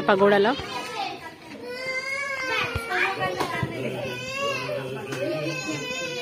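Voices of visitors, children among them, talking and calling out, with some high, drawn-out children's calls.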